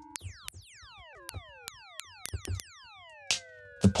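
Synthesized pings: short white-noise blips striking a self-oscillating resonant filter with modulation, each click ringing out as a pitched tone that glides steeply downward. About ten come in an irregular, overlapping string, a sound called kind of disgusting.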